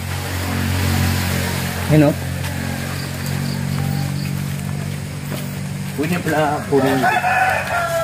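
A rooster crowing near the end, one long call, over a steady low hum. A brief loud call about two seconds in.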